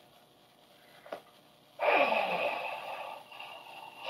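A person's loud, breathy exhale, like a sigh, with a falling voiced tail, about two seconds in. A small click comes just before it.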